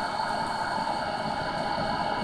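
Steady background noise: an even hiss with faint steady hum tones and no distinct event.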